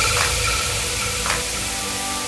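Edited-in electronic transition sound effect: a static-like hissing wash with a few faint sustained tones, slowly fading.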